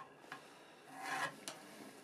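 A pencil drawn along a steel rule on a teak board: one rubbing stroke about a second in, lasting under half a second, with a light tick before and after it.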